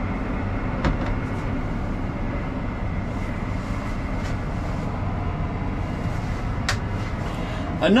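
Deutz-Fahr 8280 TTV tractor's six-cylinder engine and CVT driveline running steadily, heard from inside the cab as the tractor moves and shuttles direction without stopping. Two sharp clicks come, about a second in and near the end.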